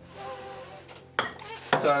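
A metal spray can set down on a workbench with a single sharp clink about a second in.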